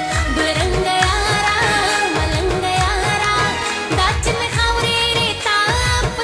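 A woman singing a melodic song into a microphone, her voice sliding and ornamenting the notes, over instrumental accompaniment with a steady low drum beat.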